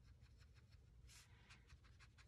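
Very faint brush strokes: a water brush dabbing and dragging watercolour across paper, a few soft scratchy touches.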